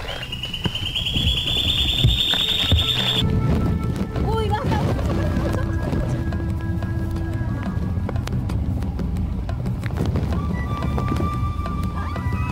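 A high, warbling whistled call, rising slightly, for about the first three seconds: a call to draw a black capuchin monkey. Background music with long held tones follows.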